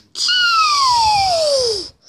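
A child's voice making a long falling sound effect: a high squeal that slides steadily down in pitch over about a second and a half, with a breathy hiss over it.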